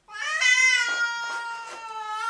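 Domestic cat giving one long, drawn-out yowl that starts a moment in and holds a steady pitch without a break: a defensive warning call.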